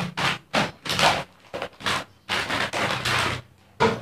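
Plastic snack packets rustling and crinkling as they are pushed aside across a tabletop, in a series of short, irregular bursts.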